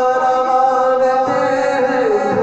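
A man singing an Urdu naat into a microphone, holding one long, steady note.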